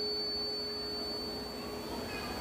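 Public-address system ringing with a steady pure tone that fades out about a second and a half in, along with the fading echo of the amplified voice: light microphone feedback through the loudspeakers.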